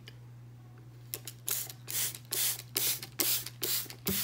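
Spray bottle misting: a rapid run of short spritzes, about three a second, starting about a second in.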